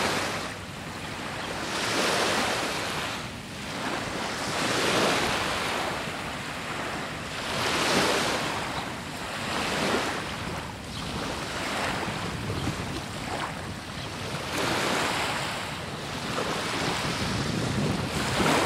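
Small waves washing in at the water's edge, the surge rising and falling every two to three seconds, with wind buffeting the microphone.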